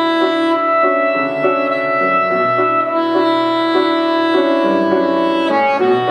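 Soprano saxophone playing a melody of held notes over grand piano accompaniment, in a classical style, with a brief break in the line just before the end.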